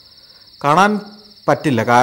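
Steady high-pitched chirring of crickets, unbroken behind a man's speaking voice, which comes in short phrases twice in the second half.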